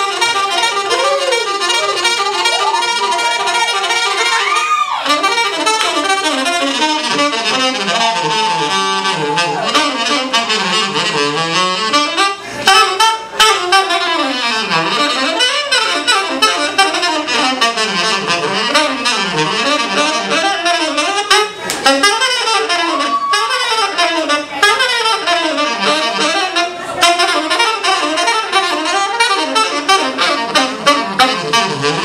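Live jazz combo: a saxophone plays a fast, winding line of many short notes over plucked upright bass. A few sharp hits cut through near the middle.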